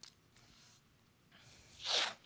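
Faint handling noise, then a quick, sharp intake of breath near the end.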